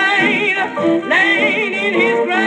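Blues song playing from a 78 rpm record: a wavering melody line with heavy vibrato, sung or played, over accompaniment. The sound is thin and cut off at the top, with hiss above it.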